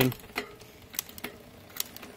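Bicycle drivetrain being turned by hand while shifting through the gears: the chain runs over the rear cassette, with a handful of sharp, irregular clicks as the SRAM rear derailleur is worked and the chain moves between cogs.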